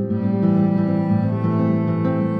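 Cello and classical guitar duet: long bowed cello notes over plucked guitar notes.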